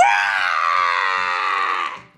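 A high-pitched voice letting out one long roaring scream, a person imitating a dinosaur. It slowly falls in pitch with a slight wobble and stops abruptly after about two seconds.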